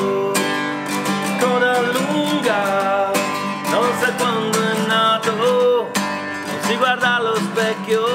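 Acoustic guitar strummed in a steady rhythm, with a man singing a melody over it in phrases.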